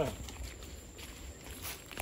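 Faint footsteps and rustling in dry grass and undergrowth: a few soft, scattered crunches over a low, steady rumble.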